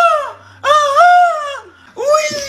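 A man wailing in a high, crying voice: long drawn-out cries that rise and then fall away, one fading shortly after the start and another of about a second following it.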